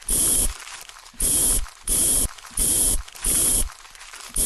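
Trigger spray bottle spritzing liquid in about five quick sprays, each a short hiss about half a second long, evenly spaced.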